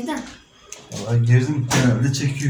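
Voices without clear words: a brief vocal sound at the start, then a low, drawn-out vocal sound from about a second in.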